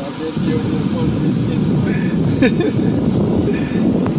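Steady rumbling noise of sea wind buffeting the microphone, with surf breaking against the rocky shore.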